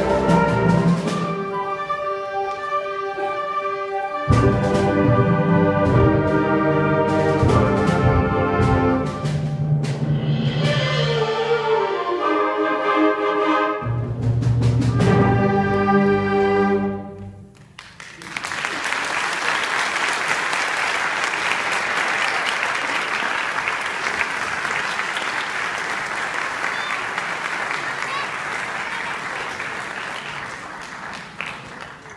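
Student concert band with clarinets and trumpets playing the final bars of a piece, which ends about seventeen seconds in. After a brief pause an audience applauds steadily.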